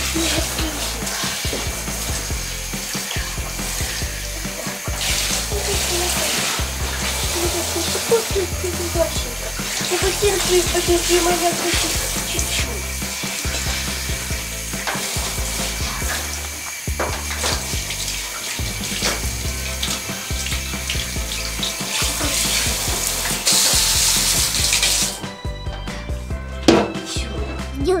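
Handheld shower spraying water onto a wet cat in a bathtub, a steady hiss that cuts off suddenly near the end. Background music with a regular bass beat plays underneath.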